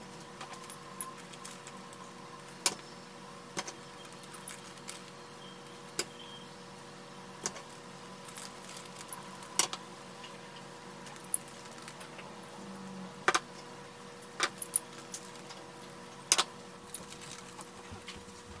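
Curling iron and hair being handled while curling: scattered sharp clicks and small taps at irregular intervals, a few louder than the rest, over a faint steady hum.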